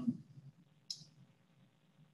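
A pause in speech: the tail of a spoken word, then a single short, faint click about a second in, over low room tone.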